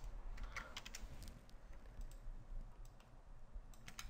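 Faint computer keyboard keystrokes: a handful of clicks in the first second and a few more near the end, with a quiet stretch between.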